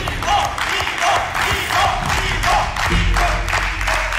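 Studio audience applauding and cheering for a correct quiz answer, with raised voices in the crowd. A low music chord comes in about three seconds in.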